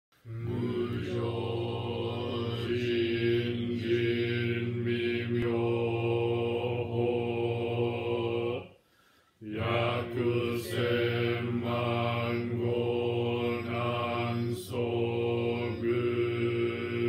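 A single man's voice chanting a Zen Buddhist liturgical chant on one steady pitch, in long drawn-out phrases, with one pause for breath about nine seconds in.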